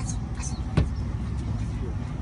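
Low, steady rumble of a running engine, with people's voices and one sharp click a little under a second in.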